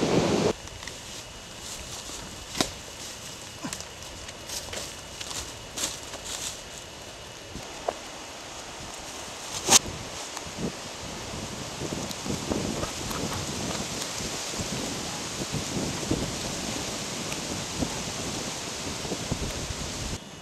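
Faint rustling of dry leaves and branches over a steady hiss, with a few sharp clicks, the loudest about ten seconds in, and denser rustling in the second half.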